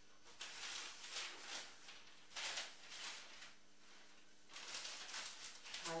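Thin tissue paper rustling in a series of short bursts as it is handled and smoothed flat over a back, with a longer rustle near the end.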